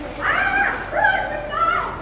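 A high-pitched vocal cry in three gliding calls, each rising and falling in pitch, close together.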